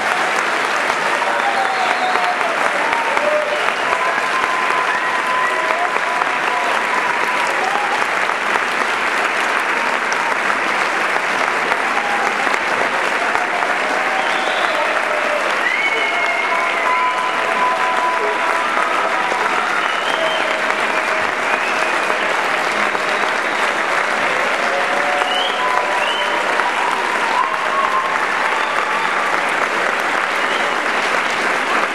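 Sustained audience applause right after a choral piece ends, steady in level throughout, with a few voices calling out over it.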